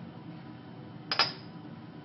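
A single sharp clink of laboratory glassware being set down, with a brief high ring, about a second in.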